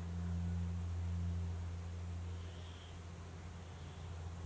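A steady low hum over faint hiss, slightly louder in the first couple of seconds: quiet room tone.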